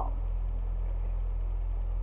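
A steady low hum, with nothing else standing out over it.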